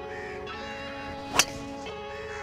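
A golf club striking a teed-up ball: one sharp crack about one and a half seconds in, over steady background music.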